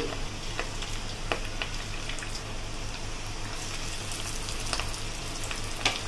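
Flattened, cornflour-coated potato pieces deep-frying in hot oil in a steel pan: a steady sizzle with scattered small pops and crackles.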